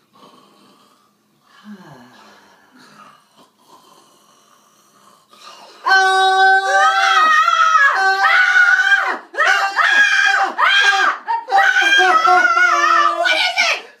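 Acted screaming from a man and a woman at studio microphones, performed as a character waking from a nightmare. After a few seconds of faint murmuring, loud, long, high-pitched yells start about six seconds in, broken by short gaps for breath, and stop just before the end.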